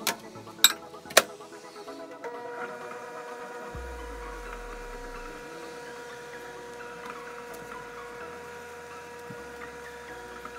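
Two sharp clicks near the start, then a new countertop microwave oven starts running about two seconds in with a steady hum.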